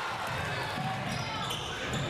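Basketball game sounds in a gymnasium: a basketball being dribbled on the hardwood court over a steady murmur of the crowd.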